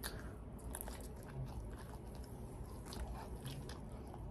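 Close-up mouth sounds of a person biting and chewing cheesy bread, with small wet clicks and smacks.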